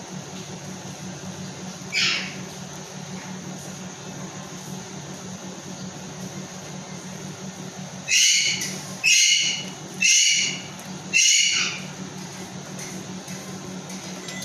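LG charcoal convection microwave oven running with a steady low hum in its last seconds of cooking. Over it comes one short, high call about two seconds in, then four loud, high calls about a second apart from around eight seconds in.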